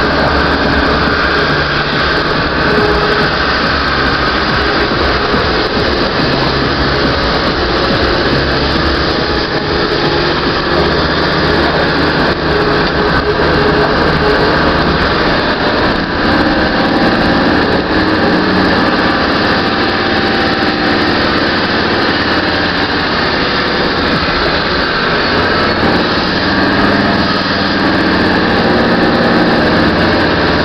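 Land Rover Defender 90 engine pulling up a steep hill, heard from inside the cab, running loud and steady with its note shifting around the middle.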